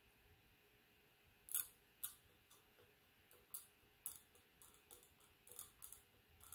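Faint, sharp scrapes and clicks of a Gracey 15/16 After Five curette's steel working end stroking against the model teeth of a typodont during scaling. They begin about a second and a half in, as an irregular run of a dozen or so short strokes.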